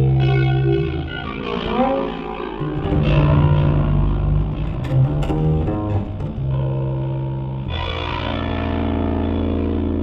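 Instrumental music: electric guitar played through effects over sustained low double bass notes, with a rising pitch slide about two seconds in and a long held chord near the end.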